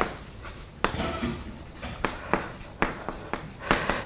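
Chalk writing on a chalkboard: a string of short taps and scratches as the chalk strikes and drags across the board.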